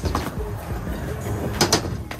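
Skateboard wheels rolling on smooth concrete, with two sharp clacks in quick succession near the end as the board strikes the ledge box.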